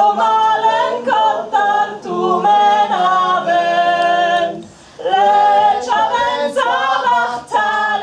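A woman singing unaccompanied, long held melodic notes with a short breath break a little before the halfway point, over a low held note beneath the melody.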